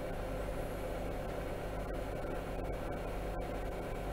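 Steady low background hum with faint hiss: the room noise of a home recording set-up, with no distinct events.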